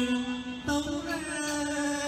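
Chầu văn (hát văn) ritual music: a long held melodic note that steps up in pitch about two-thirds of a second in, over a steady low accompaniment.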